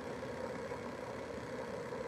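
A steady, even background hum with no distinct events.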